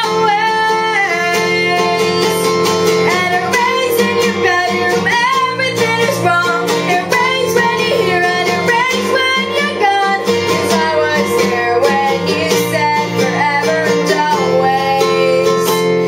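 A woman singing with her own accompaniment on a nylon-string acoustic guitar.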